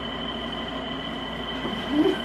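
Steady background hiss and hum with a faint, constant high-pitched whine.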